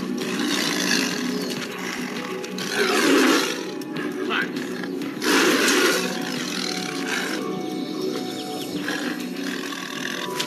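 Siberian tiger growling and snarling over a kill, with two loud snarls about three and five and a half seconds in, over background music.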